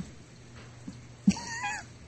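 A single short, high-pitched wavering call lasting about half a second, a little over a second in, with the pitch bending up and down; otherwise only faint background hum.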